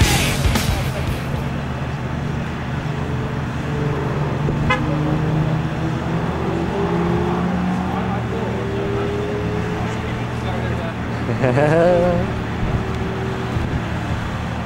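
Background music fades out in the first second, then a Lamborghini Gallardo's V10 idles steadily, its pitch drifting slightly. A short wavering voice is heard about twelve seconds in.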